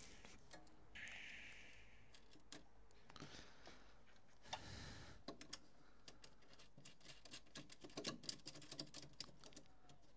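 Faint, scattered light clicks and taps of a duct part being handled and pushed into place by hand, thicker in the second half, with a brief hiss about a second in.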